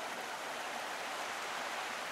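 A steady, even rushing noise of running water, with no rhythm or strikes.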